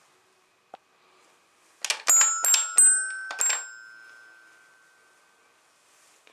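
Child's toy xylophone with coloured metal bars hit in a quick flurry of about eight strikes about two seconds in. The bars ring on and fade away over the next two seconds.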